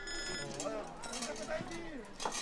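Mobile phone ringing: a brief electronic ring that cuts off about half a second in, followed by background voices.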